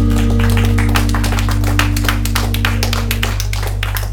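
A live rock band's last chord on electric guitars, bass and keyboard rings out and fades, while the audience claps over it from about half a second in. The higher notes drop away about three seconds in and the low end carries on.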